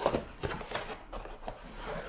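Cardboard packaging being handled: an inner cardboard box slid out of an outer carton and its flap opened, with soft rubbing and a few light taps.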